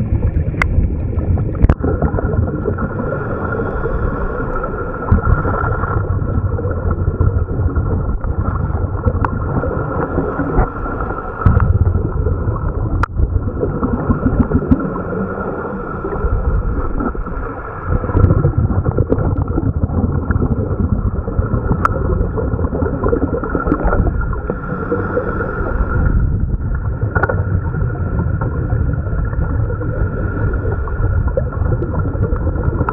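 Dive boat's engine running steadily, with water and wind noise, and a few brief knocks.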